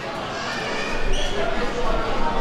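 Indistinct voices in a large hall, with a few low thuds in the second half.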